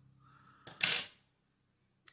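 Scissors snipping off the excess silver oval tinsel at the hook: one sharp snip about a second in.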